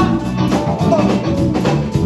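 A live Brazilian soul-funk band playing a steady groove on drum kit, guitars and keyboard.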